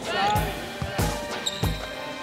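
Basketballs bouncing on a hardwood gym floor: a run of short, irregular thumps, with background music underneath.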